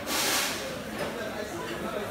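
A short, loud burst of hissing lasting about half a second, then background chatter.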